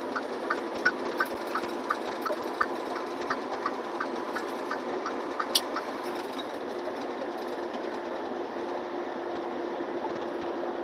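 Inside a semi-truck cab on the highway: steady road and engine noise with a low hum. A light, regular ticking, about three ticks a second, runs through the first six seconds and then stops.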